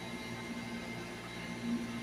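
Quiet room tone: a steady low hum with a faint, constant high-pitched whine, and no distinct event.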